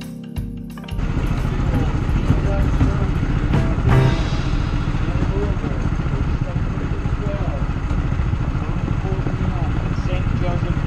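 Background music cuts off about a second in, giving way to a small go-kart engine running steadily as the kart drives along, heard from on board.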